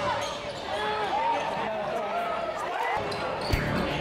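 Live basketball game sound in a gym: rubber-soled sneakers squeak on the hardwood court in many short chirps, voices carry underneath, and a basketball thuds once on the floor about three and a half seconds in.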